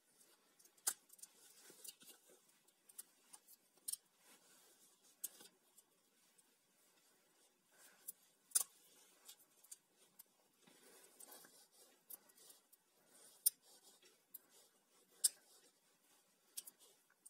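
PVC electrical tape being pulled off the roll and wound tightly around spliced wires: a faint crackling rustle with scattered sharp clicks, a few of them louder.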